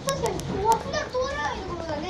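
Children's high voices chattering and calling out, with a few sharp clicks in the first second.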